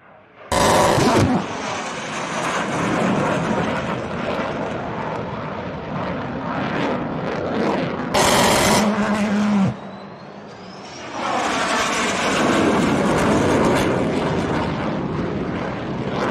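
F-16 Fighting Falcon jet noise as the fighter passes over the range, loud and continuous, easing for about a second near the middle before building again. It is broken by two short, very loud blasts: one about half a second in, and a longer one of over a second about eight seconds in.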